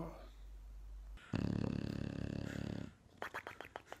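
English bulldog snoring in its sleep: one long snore lasting about a second and a half, followed by a quick run of clicks.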